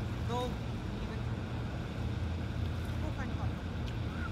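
Steady low mechanical drone, with faint distant voices.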